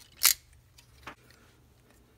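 A sharp plastic click, then a much fainter one about a second later, as the joints of a plastic transforming-robot action figure's leg are worked by hand.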